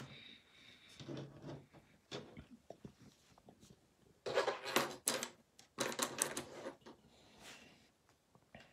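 Close clicks and crinkly rustling, with two louder clattering bursts about four and six seconds in.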